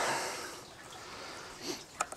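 A person breathing close to the microphone: a breathy exhale that fades away, then a short faint breath near the end.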